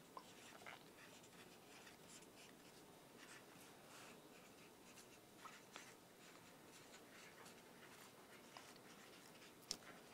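Near silence with faint, scattered scratching of markers writing on small dry-erase boards.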